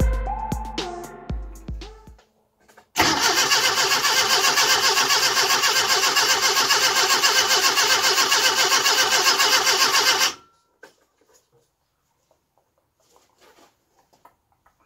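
Background music fades out, then a classic Mini's A-series four-cylinder engine is cranked on its starter motor for about seven seconds in an even, rapid beat without catching, and stops abruptly. It is a no-start that the owner puts down to the distributor drive being fitted 180 degrees out.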